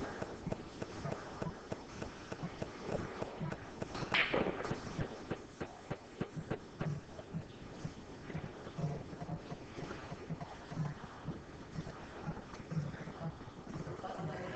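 Pool balls and cue on a pool table: a cue strike, then sharp clicks of balls knocking together and against the rails, with a stronger knock about four seconds in. Soft low thuds follow at roughly one a second in the second half.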